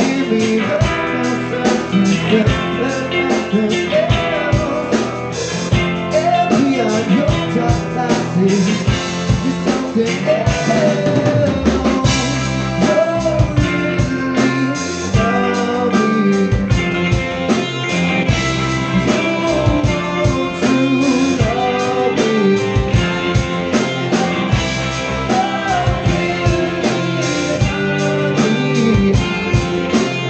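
Live rock band playing a song: electric guitars, bass and drum kit, with a lead vocal, amplified through a club PA.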